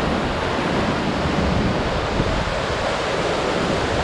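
Steady, loud rush of a tall waterfall plunging onto rocks and into its pool, heard close to its base.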